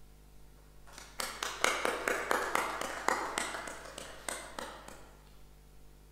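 An audience applauding: a short round of clapping that starts about a second in, is loudest soon after, and dies away about four seconds later.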